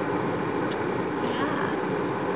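Steady car-cabin noise, an even rush and hum from the engine and ventilation, with a faint tick about two-thirds of a second in.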